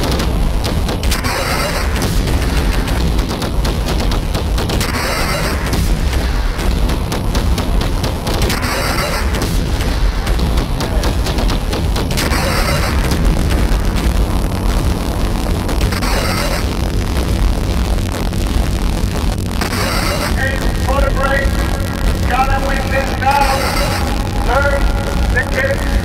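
Minimal industrial electronic music: a heavy, steady bass drone with a noisy hit about every three and a half seconds. A higher pitched stepping line comes in about 20 seconds in.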